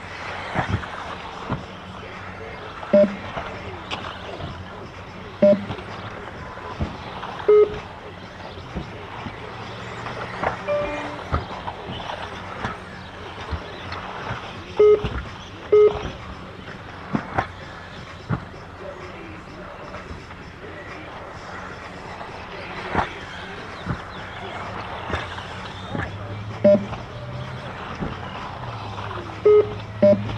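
Short electronic beeps from the race timing system, about seven at uneven intervals, sounding as RC buggies cross the lap line. Under them the buggies run steadily on the turf track, with occasional light knocks.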